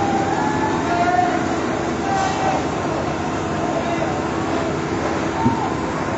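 A steady mechanical drone with a low hum, with distant voices calling over it.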